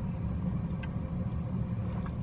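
Steady low rumble of an idling engine, with a faint tick a little under a second in.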